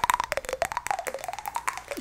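Fast, dense clicking and tapping of fingernails on a small metal object with raised dots, with a faint wavering tone underneath.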